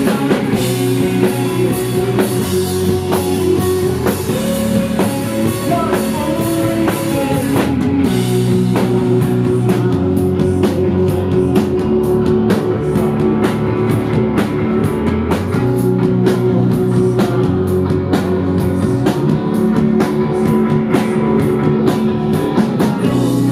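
Rock band playing live: a steady drum beat under sustained electric guitar and bass chords. Bright cymbal wash fills the top until about eight seconds in, then drops back to sharper, separate hits.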